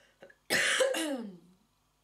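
A woman coughing into her fist: two coughs in quick succession starting about half a second in, the second trailing off with a falling pitch.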